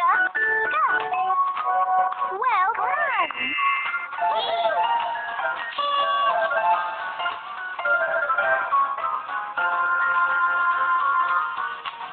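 Cheerful children's game music with cartoon sound effects: swooping up-and-down pitch glides in the first few seconds, then a bright celebratory jingle.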